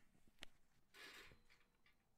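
Near silence with handling noise: one light click about half a second in, then a brief rustle about a second in.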